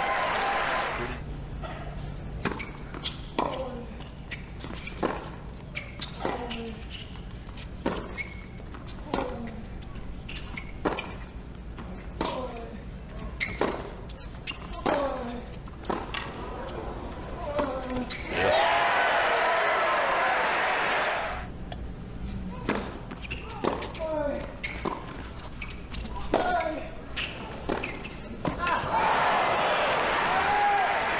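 A tennis rally on a hard court: racket strikes and ball bounces coming about once a second, with short falling vocal sounds after many of the shots. The crowd noise swells briefly about two-thirds of the way through, and the crowd cheers near the end as the point is won.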